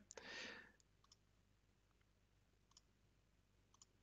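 Near silence with a few faint computer mouse clicks spread across the quiet.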